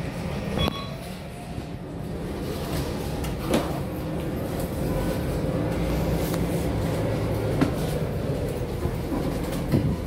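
Inside the cabin of a MAN A22 Euro 6 diesel single-deck city bus on the move: a steady low engine and road rumble. A few sharp knocks from rattling fittings come through, about half a second in, near the middle, and twice toward the end.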